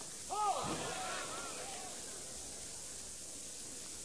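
A single voice calls out briefly over a steady background hiss. It starts about a third of a second in, its pitch rising and falling, and fades out by about two seconds in.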